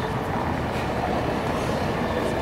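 A bus passing close by: steady engine and road noise with a strong low rumble.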